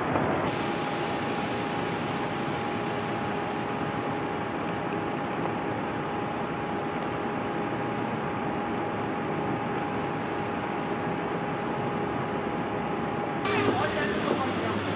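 SEPTA bus idling in street traffic: a steady noisy running sound with a constant whining tone over it, starting about half a second in and cutting off abruptly near the end.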